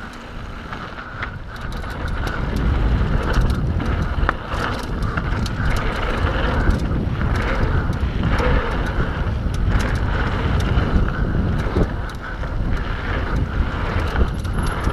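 Mountain bike riding fast down a dirt trail: wind buffeting the microphone, tyres rumbling over the ground, and frequent small rattles and clicks from the bike.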